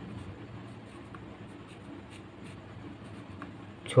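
Pen writing on ruled notebook paper: soft, continuous scratching of handwritten strokes, with faint small ticks as the pen is lifted and set down.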